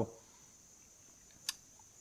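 Near silence: room tone with a faint steady high-pitched tone, and one short click about one and a half seconds in.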